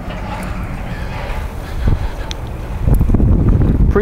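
Wind buffeting the microphone outdoors: an uneven low rumble that grows a little louder near the end, with a couple of faint clicks about two seconds in.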